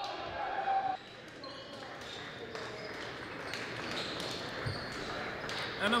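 Court sound from a basketball scrimmage in a large gym: a basketball bouncing on the hardwood floor, with players' voices echoing in the hall.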